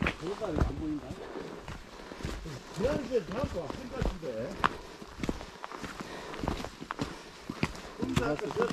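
Footsteps of several hikers walking on a trail thinly covered with snow and dry fallen leaves, an irregular run of soft steps, with brief bits of faint talk between the hikers.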